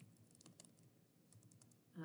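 Faint clicking of computer keyboard keys being typed: a run of irregular keystrokes.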